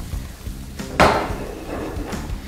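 Sliced mushrooms being sautéed in a frying pan over a gas burner: a light knock at the start, then about a second in a sudden loud clatter and hiss as the pan is tossed, fading away.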